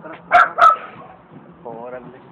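A dog barking twice in quick succession, two short loud barks about a third of a second apart.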